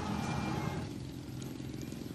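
Steady background noise of street traffic with faint voices mixed in, growing quieter about a second in.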